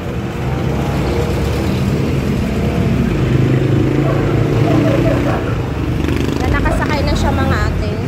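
Jeepney's diesel engine running as it pulls away from the curb, its low drone swelling a few seconds in, over street traffic.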